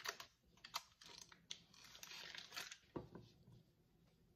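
Margarine being unwrapped and handled over a stainless steel pan: faint crinkling of the wrapper with small clicks, and one soft knock about three seconds in.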